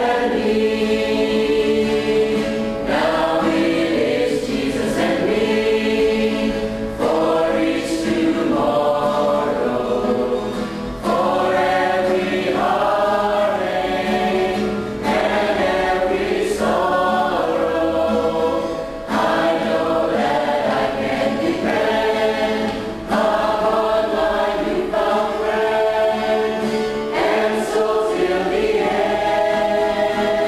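Church choir singing a sacred choral piece, in even phrases about four seconds long with a short breath between each.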